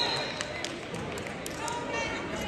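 Murmur of spectator chatter in a gymnasium, with scattered voices and a few sharp clicks about halfway through. The tail of a short, high referee's whistle blast sounds right at the start.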